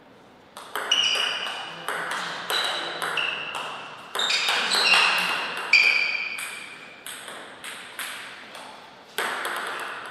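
Table tennis rally: the ball clicks on the paddles and the table at an irregular pace of one to two hits a second, each hit ringing briefly in a large hall. The rally ends with a louder knock near the end.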